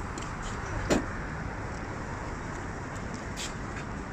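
Steady outdoor background noise, strongest in the low end and fluctuating. One short, sharp knock comes about a second in, and a fainter click follows near the end.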